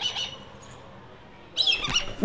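Black kite giving short, high-pitched screaming calls, one fading just at the start and another brief run about a second and a half in. The bird is agitated and calling at people close to its nest.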